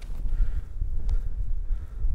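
Wind buffeting the camera microphone: a gusty low rumble that rises and falls.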